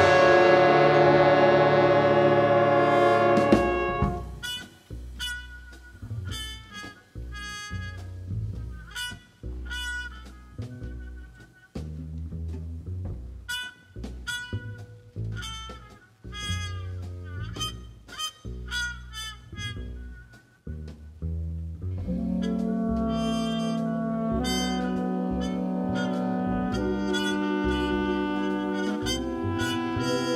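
A live jazz big band playing: a loud sustained ensemble chord cuts off about four seconds in, followed by sparse, short detached notes over a bass line with gaps between them. Later, brass and reeds take over with sustained held chords.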